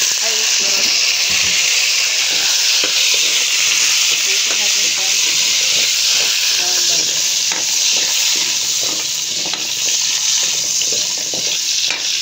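Cut carrots frying in hot chicken oil in a metal wok: a loud, steady sizzle that sets in suddenly as the vegetables hit the oil, with occasional light scrapes of a spatula stirring.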